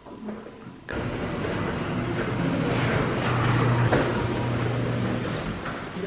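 Steady running noise of a vehicle with a low hum, heard from inside the vehicle, starting abruptly about a second in.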